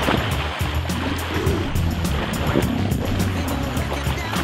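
Background music with a steady beat and a repeating bass line, over water splashing in a swimming pool as someone thrashes with an inflatable float.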